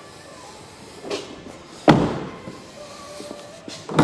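A car door on a 2010 Mazda 3 hatchback shut with a single solid thud about two seconds in, with lighter knocks just before and near the end.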